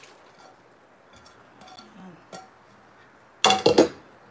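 Wooden spoon scraping sliced carrots off a ceramic plate into a pot of soup, with a few light taps, then a short loud clatter of dishes and cookware near the end.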